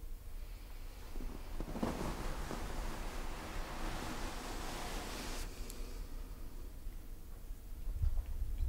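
A person's long breath out, a soft breathy noise that starts about two seconds in, swells, and stops abruptly a little after five seconds, over a low steady room hum.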